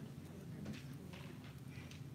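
Faint scattered knocks and rustles from people moving about and handling papers in a quiet room, over a low steady hum.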